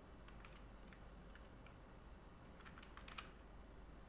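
Faint computer keyboard typing: scattered key clicks, with a quick run of keystrokes about three seconds in, over a low steady hum.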